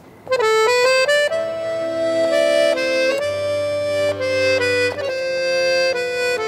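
Background score music: a held-note melody over sustained chords, starting suddenly just after a third of a second in.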